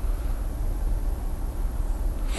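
Steady low rumble of outdoor background noise with a faint hiss, even throughout with no distinct events.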